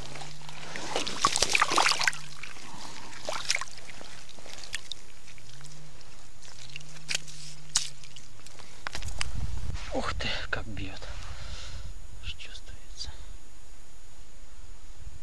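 Slush and water sloshing and crackling in an ice-fishing hole as a small pike is let go back into it, with a few sharp clicks of ice; a man's voice hums low and quietly.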